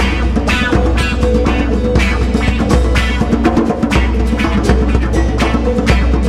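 Live instrumental music: an acoustic guitar strummed with two djembes played by hand in a steady rhythm.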